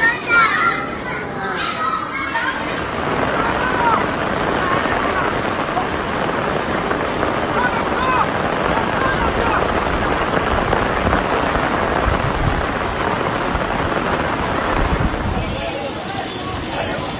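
A voice briefly at first, then a loud, steady rushing noise of fast-flowing floodwater pouring down a city street, with faint voices behind it.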